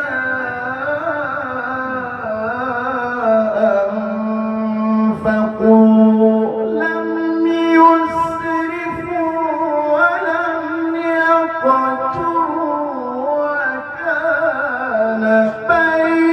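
A solo male voice chanting Quranic recitation (tilawah) in long, ornamented held phrases. The pitch steps up about six seconds in and comes back down near the end.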